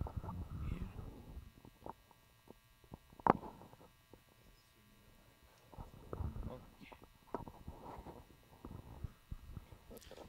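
Faint ambient sound of an open-air cricket ground between deliveries: distant, indistinct voices with scattered low thuds and a sharp knock about three seconds in.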